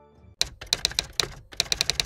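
Typing sound effect: an uneven run of sharp key clicks, about seven a second, starting about half a second in, as on-screen title text is typed out.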